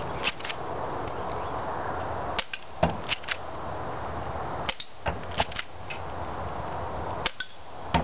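Spring-powered airsoft Desert Eagle pistol fired about three times, a couple of seconds apart, each shot a sharp snap among a few smaller clicks as the 0.20 g BBs hit and topple small wooden block targets.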